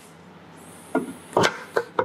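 Front cover of a Rotax 787 two-stroke engine being pressed into place by hand: a few sharp knocks in the second half as it pops on and seats.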